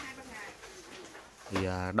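Low cooing calls of a bird, quietly in the background, then a man starts speaking near the end.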